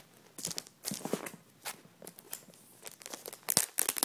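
Plastic wrapping on a tablet's retail box being crinkled and pulled at, in short irregular crackles that grow denser and louder near the end.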